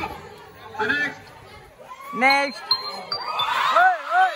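Music cuts off at the start, then a few loud voices call out in short exclamations with rising-and-falling pitch over a low crowd murmur, with a brief high thin tone just before the three-second mark.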